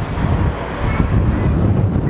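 Strong, gusty wind buffeting the microphone: a loud, uneven low rumble.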